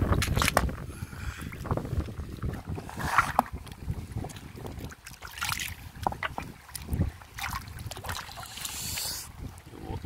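Shallow river water splashing and sloshing in irregular bursts as a stone is dipped and rinsed by hand, over a steady low rumble of wind on the microphone.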